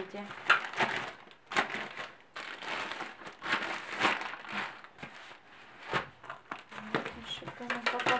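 White plastic postal mailer bag crinkling and rustling in irregular bursts as it is cut open with scissors and pulled apart to get a taped cardboard box out.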